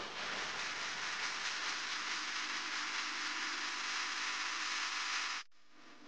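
A steady hiss that cuts off suddenly about five and a half seconds in.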